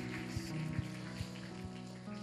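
Soft, quiet background music from a worship band: sustained chords with light single notes played about every 0.4 s.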